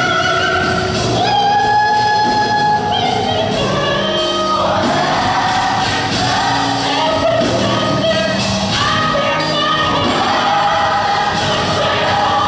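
A gospel choir singing in harmony, holding long notes that move to new pitches every second or two. Piano and drums accompany them.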